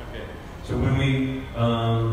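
A man speaking into a handheld microphone makes two drawn-out, even-pitched hesitation sounds, the first about a second in and the second near the end, before he starts to answer.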